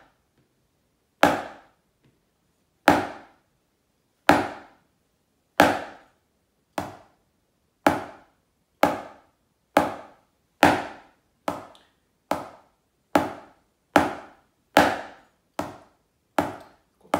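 Wooden drumsticks playing Basel-drumming five-stroke rolls (Fünferli) on a practice pad, slowly, one at a time. The rolls come about every second and a half at first and gradually closer together, to nearly one a second.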